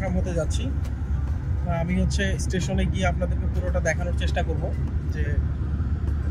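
Steady low rumble of a moving car heard from inside its cabin, with voices talking on and off over it.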